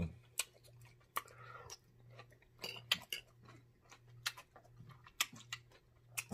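Close-miked chewing of a forkful of salad: irregular wet clicks and smacks of the mouth and teeth, a few each second.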